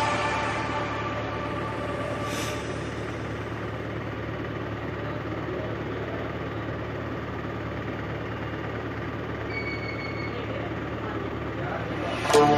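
Platelet apheresis machine running a separation cycle: a steady hum and hiss from its centrifuge and pumps. A short high beep about ten seconds in.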